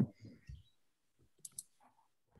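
Two quick clicks of a computer mouse, a double-click about one and a half seconds in, after a few faint soft knocks.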